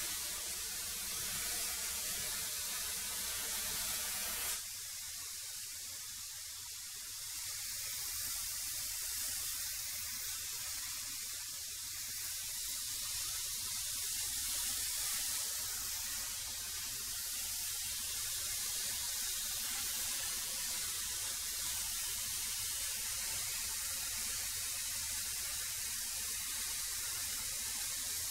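A 13-inch benchtop thickness planer running and planing semi-rough lumber to thickness, a steady hissing machine noise. About four and a half seconds in the sound changes abruptly and its lower hum drops away.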